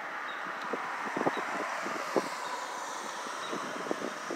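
A car passing on a nearby road, its noise swelling and fading through the middle, with short gusts of wind buffeting the microphone.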